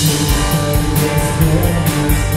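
Live rock band playing an instrumental passage on electric guitars, bass guitar and drum kit, with a steady cymbal beat and a cymbal crash near the end.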